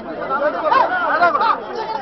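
Several people talking at once: lively overlapping chatter.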